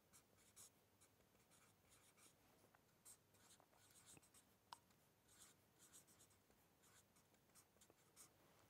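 Very faint scratching of a felt-tip marker writing on paper, in short strokes, with one small click about two-thirds of the way through.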